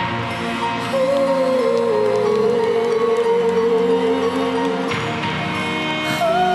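Symphonic metal band playing live: slow music with one held, gently falling melody line over sustained chords, the texture changing about five seconds in.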